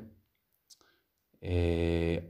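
Speech only: a man's narrating voice trails off, a short pause follows with a faint mouth click, and from about one and a half seconds in he holds one long, drawn-out vowel at a steady pitch.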